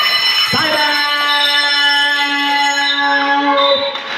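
An electronic buzzer sounds with a steady tone for nearly four seconds, cutting off shortly before the end. Over it a man's voice on the PA holds one long drawn-out call.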